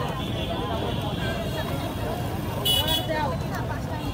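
Busy street-market ambience: people talking nearby and a steady low rumble of traffic, with a brief high-pitched tone about three seconds in.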